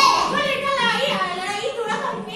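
Speech only: a woman and young children talking.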